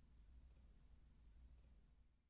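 Near silence: room tone with a faint steady low rumble.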